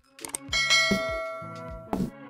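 A bell chime sound effect struck once about half a second in, ringing out and fading over about a second, over background music.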